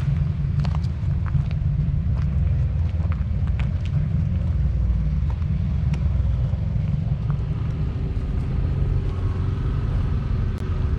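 Steady low rumble of an off-road vehicle engine running nearby, with scattered light clicks. Near the end a higher engine tone joins in.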